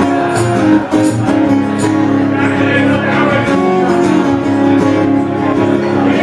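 Two acoustic guitars playing together live, a steady instrumental passage with sustained chords and no singing.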